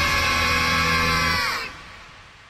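Final held chord of an upbeat J-pop song. It bends down and cuts off about a second and a half in, leaving a faint fading tail.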